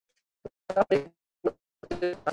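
A man's speech in short, choppy fragments broken by gaps of dead silence, as sent over an online video call.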